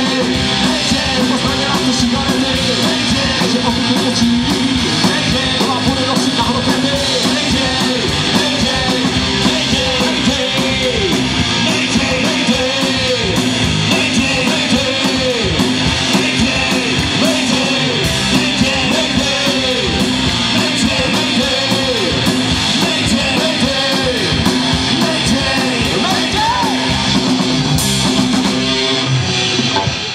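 An amateur rock band playing live through a small PA: distorted electric guitars, bass and drums with a man singing into a handheld microphone, in a fast heavy-metal style. The music stops right at the very end.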